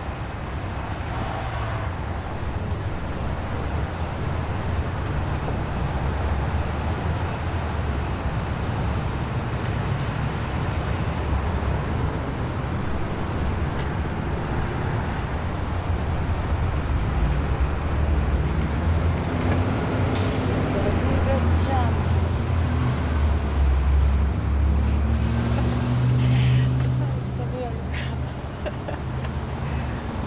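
Car engine and street traffic noise. A deeper engine note rises and swells in the second half, then eases off near the end.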